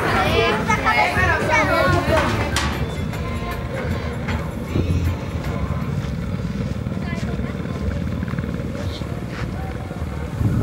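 Voices for the first two or three seconds, then the steady low drone of an engine running.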